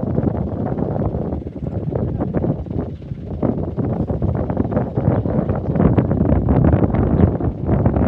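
Wind buffeting the microphone, an uneven low rumble that rises a little in the second half.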